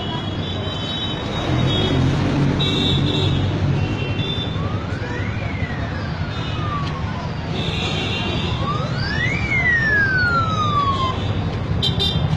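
A siren wailing twice, each cycle rising in pitch and then falling slowly, over a steady rumble of street traffic.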